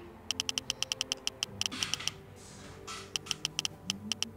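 Smartphone keyboard clicks as a text message is typed: quick runs of short, high ticks, about ten a second, with a pause in the middle. Soft background music plays under them.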